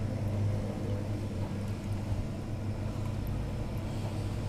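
A steady low mechanical hum that holds at one pitch without change.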